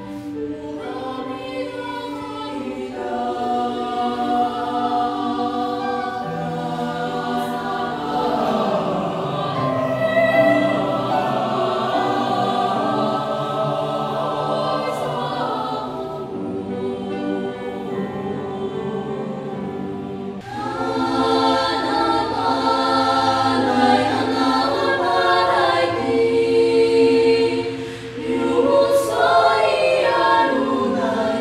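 Mixed youth choir of boys and girls singing in parts. The singing grows louder and fuller about twenty seconds in, with a short breath-like dip near the end.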